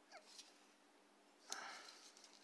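Near silence: room tone, with a brief faint rustle of hands handling a plastic action figure about a second and a half in.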